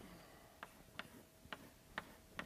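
Faint, sharp taps about two a second, unevenly spaced: chalk striking a blackboard.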